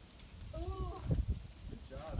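A person's voice whooping in encouragement: a drawn-out call about half a second in, another starting near the end, over low irregular rumbling thumps.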